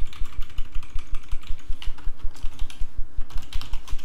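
Typing on a computer keyboard: a rapid, continuous run of keystroke clicks.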